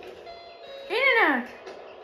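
A short, high voiced sound, about half a second long, about a second in: its pitch rises and then drops low, from a TV commercial's soundtrack heard through the television's speaker.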